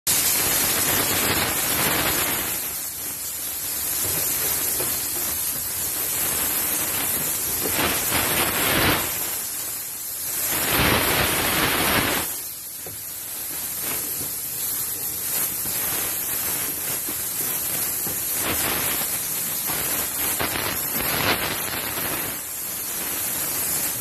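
High-pressure steam jetting from a steam cleaner's spray gun: a steady, loud hiss that swells louder for a few stretches, briefly near the start, around nine seconds in and from about ten and a half to twelve seconds in.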